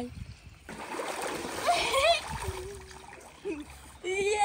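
Water splashing in a filled inflatable pool as children get in and play. A burst of splashing starts about a second in and lasts about two seconds, with children's excited shrieks and calls over it.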